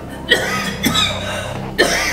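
A woman coughing hard in two fits about a second and a half apart, over background music.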